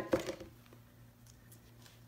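Quiet workbench room tone with a faint steady hum and a few faint taps and clicks as hands handle crafting tools and lift a silk-screen transfer off the painted board.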